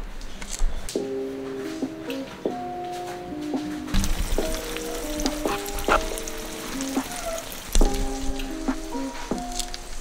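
Eggs frying in a skillet, sizzling with small pops, under background music that plays a melody of held notes starting about a second in.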